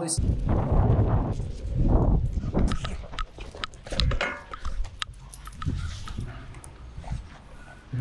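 A dog making short vocal sounds over an uneven low rumble with scattered sharp clicks.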